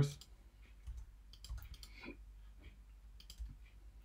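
Light, scattered computer keyboard keystrokes and mouse clicks.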